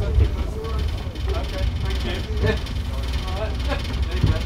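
Ailsa double-decker bus's front-mounted Volvo diesel engine running with a steady low rumble, heard from inside the lower deck.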